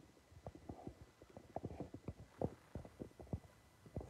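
A toddler sucking and swallowing from a baby bottle close to the microphone: soft, irregular low clicks and gulps, several a second.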